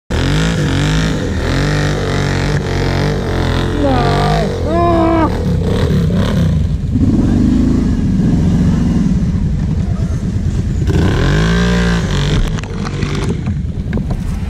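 ATV engines running and revving up and down under load as the quads work through deep mud, pitch rising and falling repeatedly.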